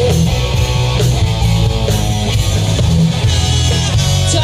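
Live rock band playing an instrumental passage through a stage PA: electric guitar over bass guitar and drum kit, with no vocals.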